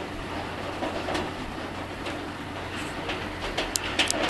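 Steady low hum and background hiss, with a few sharp clicks in the last second.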